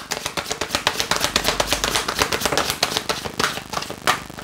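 A deck of tarot cards being shuffled in the hands: a fast, even run of card clicks, about ten a second.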